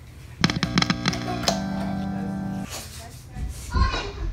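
Electric guitar: several quick plucked notes, then one note held and ringing for about a second. A couple of low thumps follow near the end.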